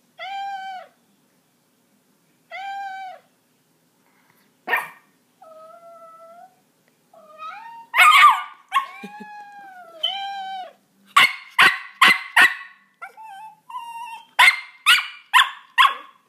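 Recorded cat meows played through a phone speaker from a cat soundboard, answered by a miniature pinscher's sharp barks. Drawn-out meows come first; the barks grow louder and come in quick runs of about four in the second half.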